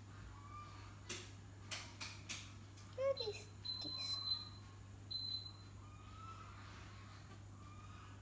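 Faint voices in the background with a low steady hum. There are four sharp clicks in the first half, and twice a short, high, steady tone near the middle.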